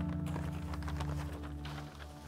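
Soft background music with held notes, over the crackle and rustle of a large, old newsprint newspaper being moved and flattened by hand.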